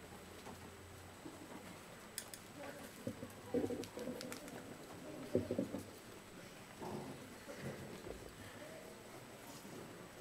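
Faint pigeon or dove cooing: about half a dozen short, low coos, spread over the second half of the stretch, with a few faint clicks.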